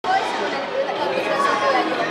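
Many voices chattering at once, a steady hubbub of overlapping talk from a group of young athletes and onlookers.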